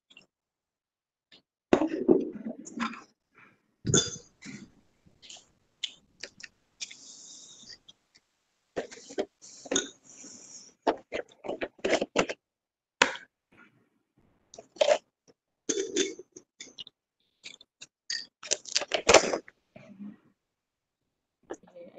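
Scattered noises from unmuted participant microphones on a video call: a cough about four seconds in, among irregular clicks, knocks and rustles that come and go.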